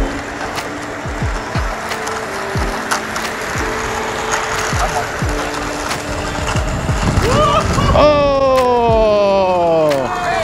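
Background music with a beat: deep bass drum hits that drop in pitch, under held synth notes, and near the end a pitched melody line that slides downward.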